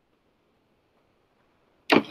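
Near silence, then right at the end a sudden loud slide-transition sound effect from the presentation software, which fades out within about half a second.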